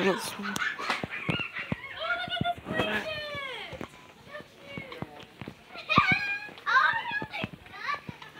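Children's voices, high-pitched talking and calling out in bursts, with a sweeping downward call about three seconds in and another burst around six to seven seconds, over scattered short clicks.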